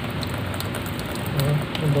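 Tap water running steadily into a sink, splashing over a squid and the hands rinsing it.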